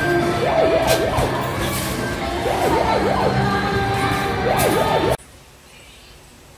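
Arcade game machines sounding electronic effects: a fast warbling, siren-like tone comes three times over a steady din of game tones and jingles. It cuts off suddenly about five seconds in, leaving faint room hiss.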